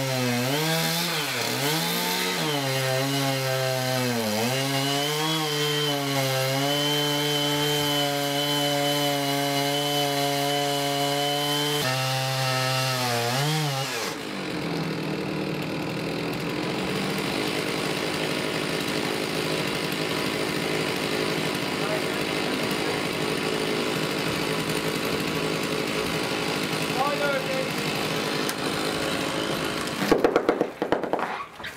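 STIHL chainsaw cutting through the trunk of a dead white fir. The engine's pitch dips and recovers under load, then holds steady. About fourteen seconds in, the tone gives way to a rougher, noisier running sound as the cut goes on.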